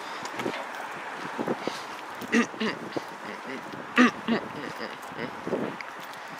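A single cough about midway, over steady wind noise on the microphone, with a few brief faint voice sounds.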